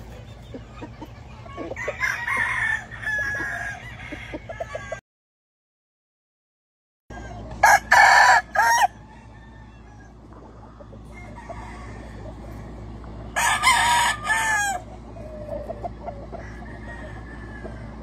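Gamecock roosters crowing, two loud crows about eight and fourteen seconds in, with softer clucking and calls between. The sound cuts out completely for about two seconds just before the first crow.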